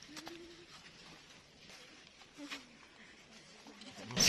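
Faint outdoor ambience with two short, low cooing calls, typical of a dove. The second coo, a little past halfway, falls in pitch.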